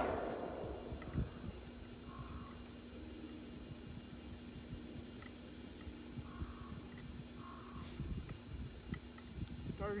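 Quiet outdoor background with a faint steady hum, a few soft clicks and handling knocks, and faint distant voices; the tail of a sharp knock fades in the first half second.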